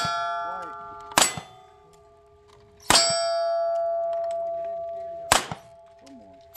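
Revolver shots fired at steel plate targets, three in quick succession about one and a half to two and a half seconds apart. Each hit leaves the steel ringing in long, slowly fading tones, and the ring of the hit just before also carries through the first second.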